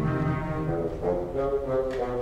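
Symphony orchestra playing live: a low held chord that fades about a second in, giving way to higher sustained notes.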